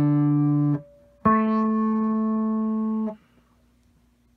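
Electric guitar played through a Chase Bliss Condor whose low-pass filter is swept by an Empress ZOIA envelope follower, opening from fairly closed toward open as each note rings. One held note ends under a second in; a second note rings for about two seconds and is cut off abruptly.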